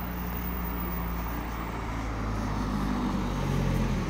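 A car engine humming low as the car drives past on the street, growing louder toward the end and cutting off suddenly.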